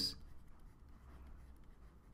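Faint scratching of a stylus writing words on a drawing tablet.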